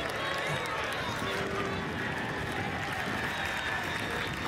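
Ballpark crowd applauding and cheering steadily, a dense wash of clapping with voices mixed in.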